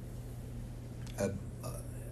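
A pause in speech over a steady low hum, broken a little over a second in by one short, throaty spoken 'a' as the speaker starts his sentence again.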